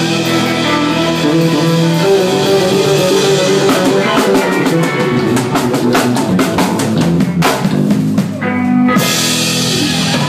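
Live band with electric guitar, bass and drum kit playing an instrumental passage without vocals. In the second half the drums play a run of rapid hits, which leads into a loud held chord near the end.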